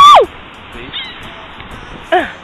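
A woman's startled shriek of "Oh!" trails off with a falling pitch. Then a seagull gives a brief faint call over a steady background hiss about a second in.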